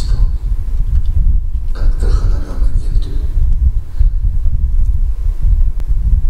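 A loud, steady low rumble, with a few faint spoken words about two seconds in.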